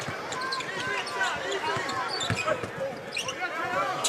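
A basketball being dribbled on a hardwood court: repeated low thumps under a steady arena crowd murmur, with short voices and squeaks in between.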